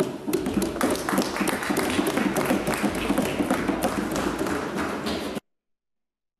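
Applause from a chamber full of people clapping, a dense patter of many hands, which cuts off abruptly about five seconds in.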